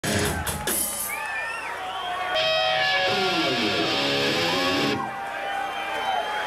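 Amplified electric guitar on a rock stage, sounding bending and sliding notes and held tones rather than a full song.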